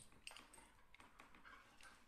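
Near silence, with a few faint soft scuffs and rustles as a Dalmatian and a kitten tussle against an upholstered armchair.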